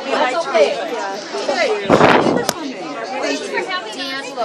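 Indistinct chatter of several people talking in a room. About two seconds in there is a short burst of noise that ends in a sharp click.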